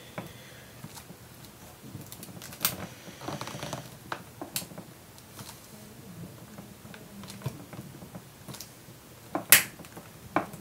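Plastic clicks, taps and knocks from a laptop's plastic case being handled and pressed together by hand, with a brief scrape about three seconds in and the sharpest click near the end.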